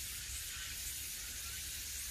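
Steady outdoor background noise: an even high hiss over a low rumble, with no distinct events.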